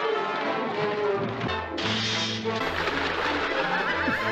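Orchestral cartoon score with brass, joined about two seconds in by a loud rushing splash of water as a spout bursts over the bathtub.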